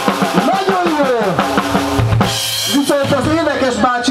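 A drum kit played briefly on stage: a bass drum hit with a short cymbal crash about two seconds in, among a man's talking.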